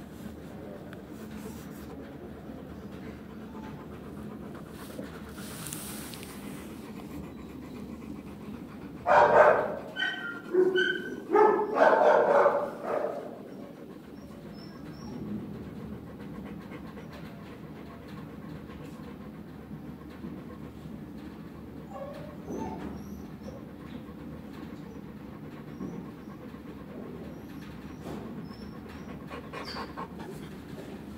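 A dog barking: a quick run of about five loud barks a few seconds long near the middle, over a steady low background.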